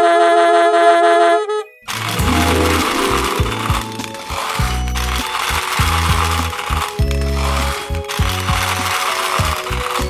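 A held brass-like chord of children's music, then from about two seconds in a dense clatter of many small plastic balls pouring and tumbling, over a music track with a stepping bass line.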